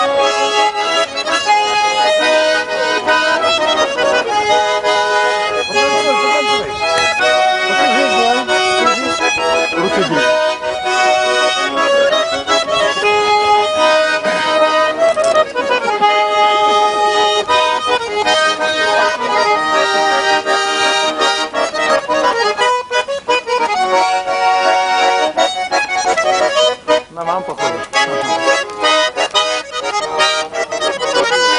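Button accordion playing a folk tune: steady held chords with a melody over them, unaccompanied and without singing.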